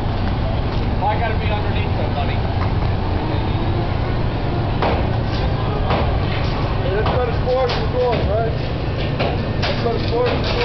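Truck-mounted mobile crane's diesel engine running with a steady low rumble while it holds a suspended load, with a couple of sharp knocks about five and six seconds in.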